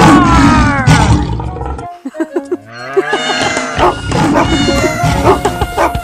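A cartoon character's long vocal cry, falling in pitch over about two seconds, then children's music with steady held notes from about two seconds in.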